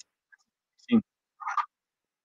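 Two short throaty vocal sounds from a man, the first just under a second in and a briefer one half a second later, with dead silence around them.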